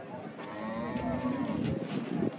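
A cow mooing: one long low call lasting about a second and a half, its pitch rising slightly and falling back.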